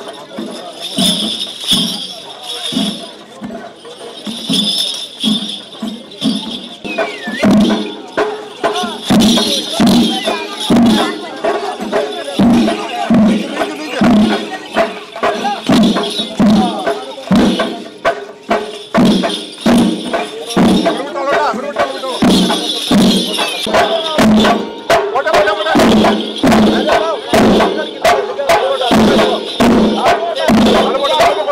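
Procession percussion accompanying Pulikali tiger dancers: a steady drum beat, a little under two strokes a second, with metallic jingling over it. Crowd voices mix in. The beat grows louder a few seconds in.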